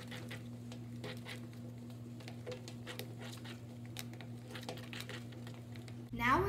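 Glue-based slime mixture being stirred by hand in a plastic bowl: a run of irregular soft clicks and wet squishes, over a steady low hum.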